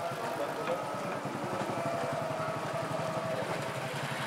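An engine idling steadily, with a rapid, even pulse.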